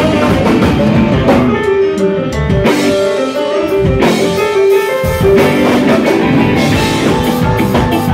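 Live rock band playing: electric guitar and drum kit with keyboard and horn. A long note is held through the middle while the low end thins out, and the full band comes back in about five seconds in.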